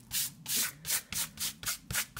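A hand rubbing quickly back and forth over dry watercolour paper, clearing off dried masking fluid and salt: a run of short dry swishes, about four a second.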